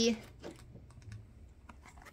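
Faint, scattered light clicks and taps of hands handling and turning a small cardboard toy box, just after the end of a spoken word.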